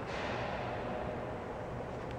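Steady background noise of a large indoor hall, with a sharp click at the very start and a brief hiss that fades within about half a second.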